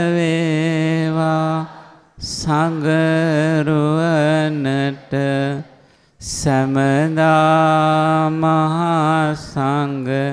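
A single voice chanting a Buddhist verse in long, drawn-out notes with a wavering pitch, sung in phrases broken by short breaths.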